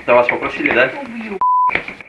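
A voice speaking on body-camera footage, cut about one and a half seconds in by a short, steady high-pitched beep that covers a word. The beep is a bleep censoring speech.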